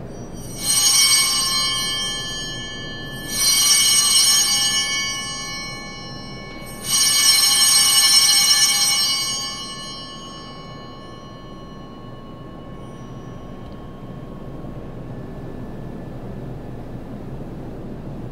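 Altar bells rung three times, each ring a shaken set of small bells with many high tones that die away over two to three seconds, marking the elevation of the chalice at the consecration. After the third ring only quiet room tone remains.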